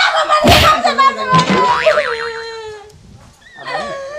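A woman crying out loudly in high, wavering wordless cries, with a sharp thump about half a second in.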